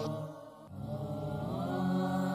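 Background music of long held, chant-like tones that fades almost away just after the start, then comes back and settles on a new sustained note.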